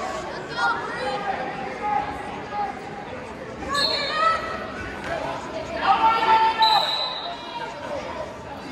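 Voices shouting and calling out over crowd chatter, echoing in a large gymnasium. The shouting is louder about a second in, again around four seconds in, and loudest around six to seven seconds in.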